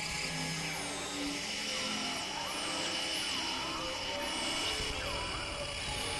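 Dense experimental collage of several music recordings playing over each other: held tones and drones, repeated falling high-pitched glides, and a low rumble that thickens near the end.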